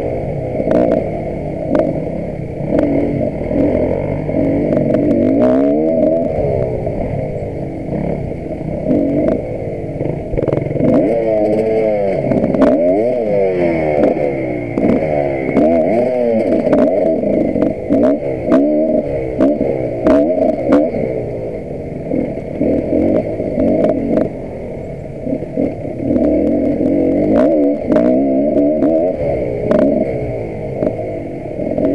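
Dirt bike engine heard from on board, revving up and down again and again under the throttle, with frequent knocks and rattles as the bike goes over rough ground.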